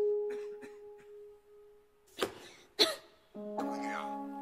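Advert soundtrack: one held musical note fading away, then a man coughing twice about two seconds in, followed by soft music chords starting near the end.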